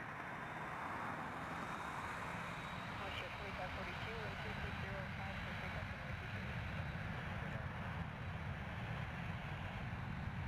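Jet airliner engines on the takeoff roll: a steady distant roar that grows slightly louder.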